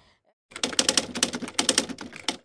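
Typewriter-style typing sound effect: a rapid run of key clicks starting about half a second in, which goes with on-screen text being typed out.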